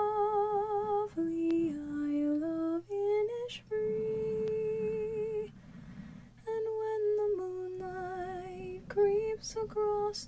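A woman singing an Irish folk ballad softly and unaccompanied, holding long notes with vibrato and pausing for breath about six seconds in. Fingertips rub the foam microphone cover under the singing.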